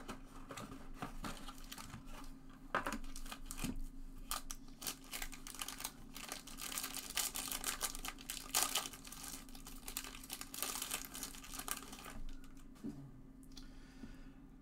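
Foil wrapper of a Topps Inception baseball card pack crinkling and tearing as it is pulled open by hand, in irregular crackles that are busiest in the middle stretch.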